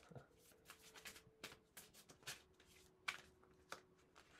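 Deck of oracle cards shuffled by hand, faint, with scattered light taps and snaps of the cards and a sharper snap about three seconds in.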